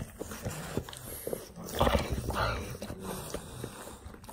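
English bulldog breathing heavily and making low noises while gripping a rubber ball in its jaws during tug of war.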